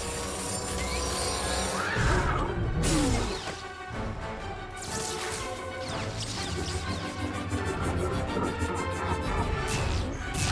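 Dramatic film score under battle sound effects: lightsabers humming and clashing, with sharp crashing impacts about two and three seconds in and another near five seconds.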